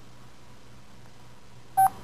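A single short touch-tone beep from a phone keypad being pressed, near the end, over a faint steady low hum.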